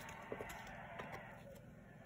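Faint ticks of baseball cards being thumbed through by hand, one card slid behind another.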